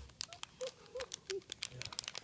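Foil blind-bag packet of a My Little Pony toy being picked at and torn open by a child's fingers: a quick run of sharp, irregular crinkles and crackles.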